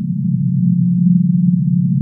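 A loud, steady low electronic drone: a few close low tones held unchanged without a break.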